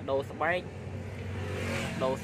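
A motor vehicle's engine running close by, with a rising hiss of engine and tyre noise that peaks near the end, as if it is passing. A few words of speech come first.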